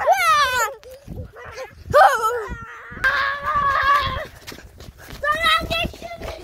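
Children's voices crying out without clear words: a falling wail at the start, a short shout about two seconds in, a held cry about three seconds in, and another short cry near the end.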